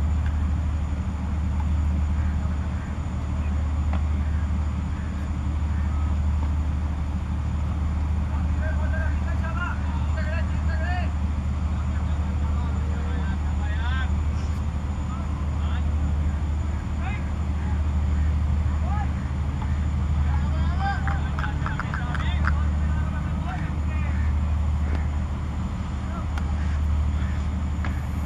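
A steady low rumble with faint, distant voices of players calling out on the field every so often.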